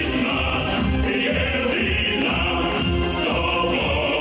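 Male vocal group singing in harmony into microphones over amplified backing music with a steady bass beat, heard through the hall's sound system.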